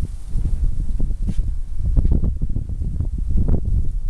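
Wind buffeting the microphone: an uneven low rumble with scattered short knocks.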